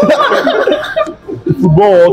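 A group of young men laughing and chuckling over each other, a dense jumble of voices for about the first second, then one man speaking near the end.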